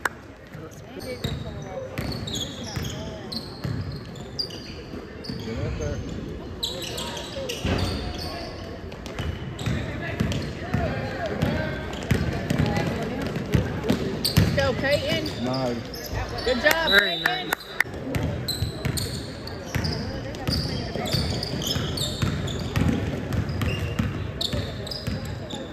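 Basketball game play on a hardwood gym floor: a ball being dribbled with repeated bounces, sneakers squeaking sharply, and players' and spectators' voices in the gym.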